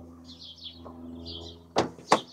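Car door locks clicking open once near the end, after the touch sensor on the door handle is pressed, over a steady low hum. Birds chirp in the background.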